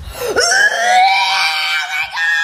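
A woman screaming in terror: one long, high-pitched scream that starts about a third of a second in and is held to the end.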